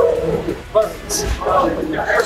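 A man breathing hard with voiced grunts while doing burpees, with a hissing exhale and a low thud about a second in.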